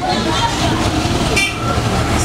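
Loud steady low rumbling noise, with a brief hiss about one and a half seconds in.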